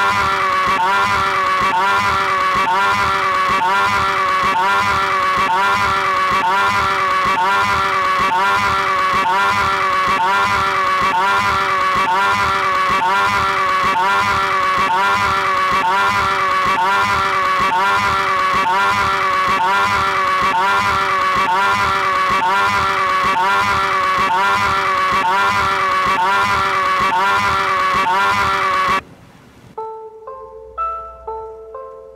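A loud, sustained droning chord with a steady repeating pulse, from a lo-fi experimental cassette track. It cuts off abruptly near the end.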